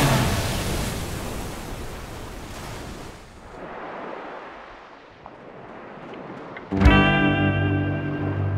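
A splash and rushing, churning water of a surfing wipeout and going under, a noisy wash that fades away over several seconds. About seven seconds in, electric guitar music starts suddenly.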